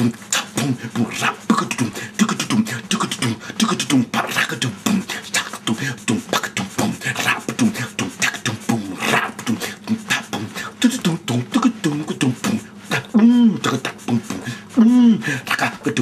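Old-school vocal beatbox: a man imitating a drum kit with his mouth, keeping a steady beat of kick-drum 'boom' and snare 'chop' sounds with quick percussion fillers in between. He laughs briefly at the start, and a few short pitched vocal notes that rise and fall join the beat near the end.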